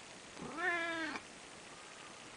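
Orange tabby domestic cat giving one meow of a little under a second, rising at the start and then held level.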